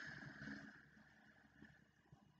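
A woman's slow, deep exhale, a faint breathy hiss that fades out about a second in, followed by near silence.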